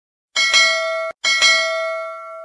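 Notification-bell sound effect of a subscribe-button animation: a bell rings twice, the first ring cut short by the second about a second in, and the second ring fades away slowly.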